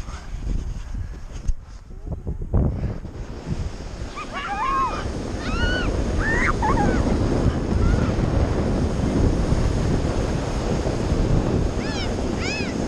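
Inflatable snow tubes sliding fast over packed snow: a steady rushing, scraping noise with wind buffeting the microphone, growing louder about three seconds in as the tubes pick up speed. Several short, high-pitched yelps from the riders come around the middle.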